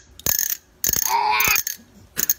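A tabby cat gagging: a burst of short clicking hacks, then a longer throaty retch about a second in.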